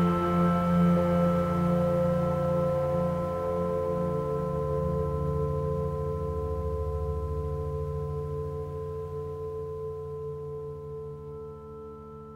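ASM Hydrasynth playing a sustained ambient synth pad: a held chord of steady tones that slowly fades away, its low notes shifting about four seconds in.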